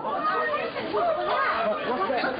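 Several men's voices talking and calling over one another in a confused babble, heard on an old, muffled TV news camera recording.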